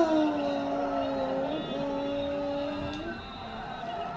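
A young child's voice holding a long, level 'aaah'-like note, broken once about one and a half seconds in and resumed until about three seconds in.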